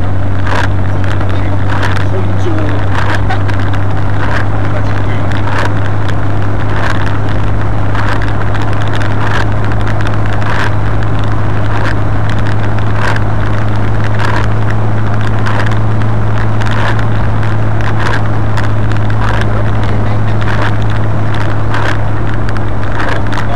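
A car driving at a steady speed: a constant low engine drone under heavy, rough wind rumble on the microphone.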